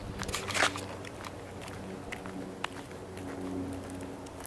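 Footsteps scuffing along a rough, gritty path, with scattered small clicks and one louder crunch about half a second in. A steady low hum runs underneath.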